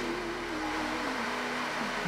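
A man's drawn-out hesitation sound, a held "uhh" at one steady pitch that sags toward the end, over a faint low hum.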